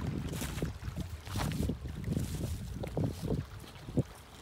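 Wind gusting on the phone microphone as an uneven low rumble, over small lake waves lapping on a pebble shore. A short sharp thump at the very end.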